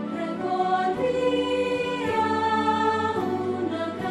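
Choir singing a hymn in Spanish with instrumental accompaniment, holding long notes that shift in pitch about every second.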